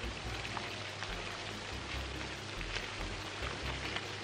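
A steady, even hiss like rain falling, with a faint uneven low rumble beneath it and a few faint ticks.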